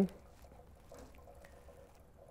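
Faint trickle of electrolyte solution being poured through a funnel into a hydrogen generator's tank, over a faint steady hum.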